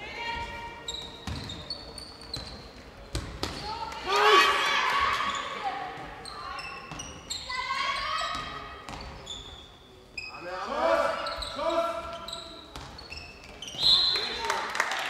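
A handball bouncing on the sports-hall floor, with shouting voices and short high squeaks scattered through the play, all echoing in a large hall.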